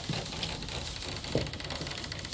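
Dairy goats' hooves and footsteps rustling and pattering through loose hay and straw bedding, with one short call-like sound a little over a second in.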